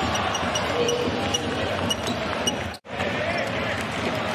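Basketball bouncing on a hardwood court amid steady arena noise with voices. The sound drops out abruptly for a moment about three seconds in, at an edit cut.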